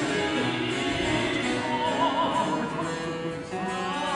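Baroque ensemble playing, led by plucked theorbo continuo. A singer's voice comes in about two seconds in, holding notes with a wide vibrato.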